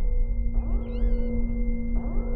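An otter gives a short, high, wavering squeal about half a second in. Under it runs the robot camera's steady electronic hum, with two rising whirs as its lens refocuses, over a low rumble of surf.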